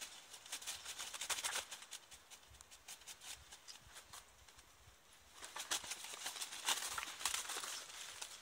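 Crows trapped in a chicken-wire cage flapping and clambering against the wire mesh: quick clicks and rustles in two bursts, at the start and again from about five and a half seconds in, quieter in between.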